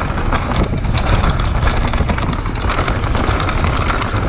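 Downhill mountain bike running fast down a rough dirt trail: wind buffeting the on-board action camera's microphone, with tyre noise and rapid, irregular clicks and rattles of the bike over roots and rocks.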